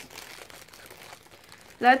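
Plastic mailing package crinkling quietly as it is handled.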